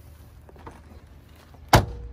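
A small motorhome compartment hatch shut with one sharp bang near the end, followed by a brief metallic ring. Faint handling clicks come before it.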